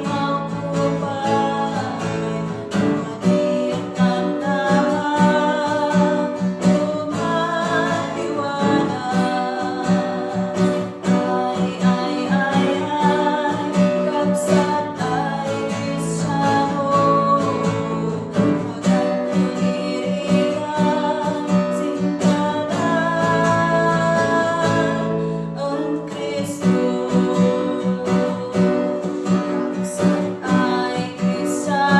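Women singing a Kankana-ey gospel song, accompanied by strummed acoustic guitar.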